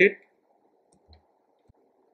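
A few faint, scattered computer keyboard keystrokes over a faint low hiss.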